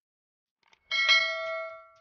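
Bell 'ding' sound effect from a subscribe-button and notification-bell animation: one bright strike about a second in, ringing with several clear tones and fading away within a second, just after a couple of faint clicks.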